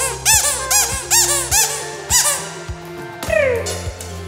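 Pink rubber squeaky dog toy squeezed over and over, about two squeaks a second, each rising then falling in pitch, then one longer squeak falling in pitch about three seconds in.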